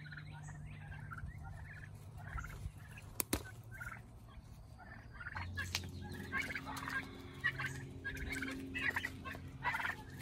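White domestic turkeys calling with many short, repeated calls, sparse at first and much busier from about halfway in. A single sharp click about three seconds in.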